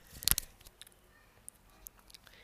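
A few short, sharp clicks close together about a quarter second in, followed by a handful of fainter, scattered ticks.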